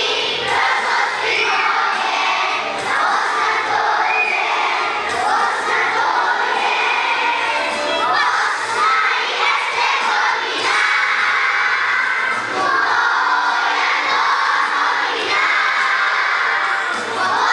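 A large group of young children singing loudly together, their voices pushed close to shouting.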